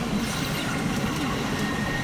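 Steady din of a busy pachinko parlor, with the clatter and electronic sounds of many machines blending into one continuous noise. A faint high steady tone joins near the end.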